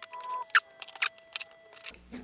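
Hands threading a braided shock cord through the notch of a thin wooden centering ring on a cardboard rocket tube: a scatter of light clicks and rustles with a few short squeaks of cord rubbing against the wood.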